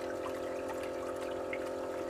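Julabo ED immersion circulator running: its circulation pump motor hums steadily while the pumped water churns and trickles in the bath.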